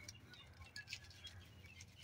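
Near silence, with faint, brief bird chirps.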